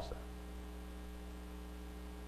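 Faint, steady electrical mains hum: a low, even buzz with a few fainter higher tones above it, and nothing else sounding.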